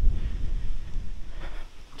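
Wind buffeting the microphone, a low rumble that eases off toward the end.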